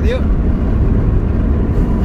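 Steady low rumble of tyre and wind noise inside a moving car's cabin, with a window open.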